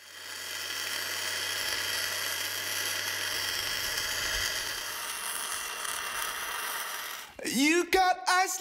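Electric arc welding on steel: the steady crackling hiss of the welding arc, with a low hum under it for the first few seconds. It stops near the end.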